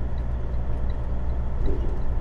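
Semi-truck cab noise at highway speed: a steady low drone of the diesel engine and tyres running on the road.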